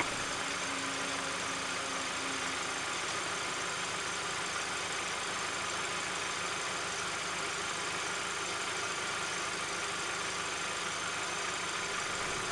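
A car engine idling steadily at a low level.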